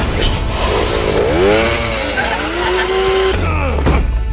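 A souped-up power wheelchair's motor revving: its pitch climbs about a second in, holds steady, then cuts off about three seconds in.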